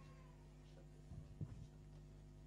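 Near silence: a pause in speech, with only a faint steady low hum.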